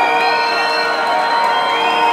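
House music played loud over a club PA, with sustained held tones, and a large crowd cheering and whooping over it.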